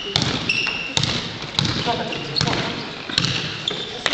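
Basketball being dribbled on an indoor court, a bounce roughly every three-quarters of a second, with sneakers squeaking briefly on the floor as players run.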